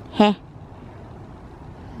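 One short spoken syllable from a woman just after the start, then only a low, steady background noise.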